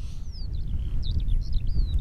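A small bird calling: a few high chirps and downward-sliding whistled notes, over a low rumble of wind on the microphone.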